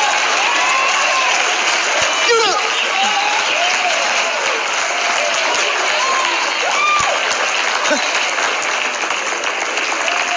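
A live audience applauding steadily for several seconds, with scattered shouts and calls rising out of the crowd.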